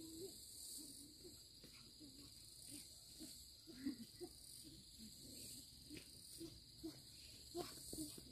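Faint, steady high-pitched chorus of crickets or other insects. Under it are soft, scattered footsteps on a dirt path that grow louder near the end.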